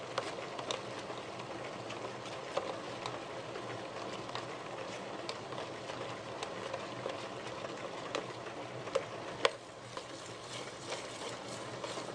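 Electric tabletop grinder running with its beater attachment churning thick urad dal batter in a stainless steel bowl: a steady motor hum under wet squelching, at the stage of beating the batter for bonda. Scattered sharp ticks, one louder a little before the end, as the spatula in the bowl knocks against it.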